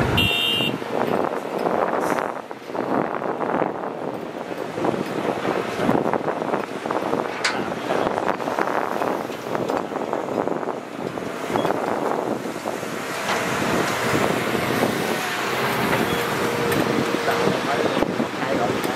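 Hitachi Zaxis 200 hydraulic excavators and diesel dump trucks at work: a steady run of engine noise with clatter from the digging. A short high-pitched tone sounds at the very start, and a steadier engine note comes up in the last few seconds as another dump truck pulls in.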